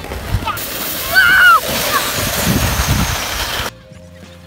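Red plastic sled sliding over packed snow with a steady hiss and low bumps, and a child's high shout about a second in. Near the end the sound cuts off abruptly into quieter background music.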